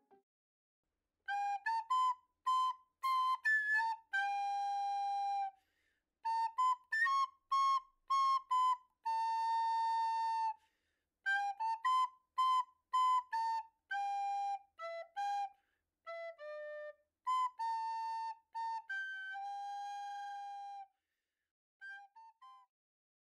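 Background music: a lone flute-like melody in short phrases, with dead-silent gaps between them.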